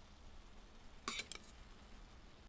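Quick clicks about a second in, a metal utensil knocking the pot as linguine is lifted out of the pasta water, over a faint hiss of the simmering pans.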